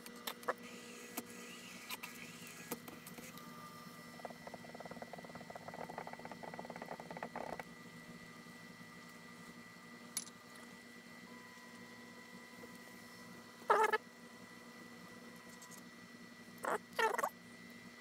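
Prusa Mini 3D printer running its self test: a faint steady whine and hum from its motors and fans, with a buzzier stretch about four to seven seconds in and a few short motor movements near the end.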